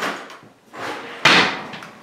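A white writing board being fetched and handled: a few scraping, sliding sounds, the loudest just past a second in.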